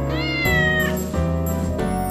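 A single cat meow, rising then falling in pitch and lasting under a second, over children's-song backing music.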